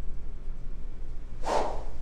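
A single fast swing of a SuperSpeed blue overspeed training club makes one short whoosh about one and a half seconds in, cutting the air with no ball strike. This club is about 10% lighter than a driver, and the whoosh's pitch rises the faster the club is swung, a gauge of swing speed. A low room hum runs underneath.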